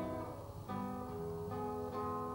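Music of a plucked string instrument: a slow line of single notes and chords, with a new one struck three times.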